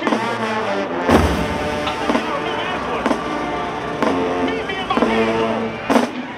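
Show-style marching band playing: brass and sousaphones hold loud chords while drum strikes land roughly once a second, with a heavy low bass-drum hit about a second in.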